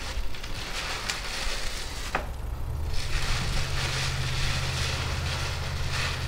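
Plastic packaging wrap crinkling and rustling as it is handled and pulled off bike rack parts, with two small clicks in the first couple of seconds. A low steady hum comes in about halfway through.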